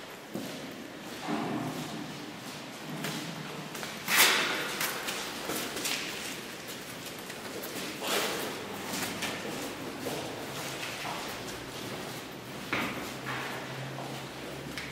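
Footsteps and scattered thumps on a concrete floor, mixed with bumps from the handheld camcorder. The loudest thump comes about four seconds in, with others near the middle and end.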